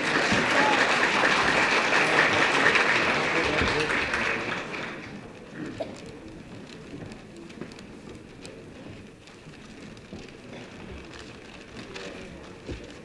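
Audience applauding. The clapping is loud for about four seconds and then dies away, leaving a low room murmur with scattered small knocks.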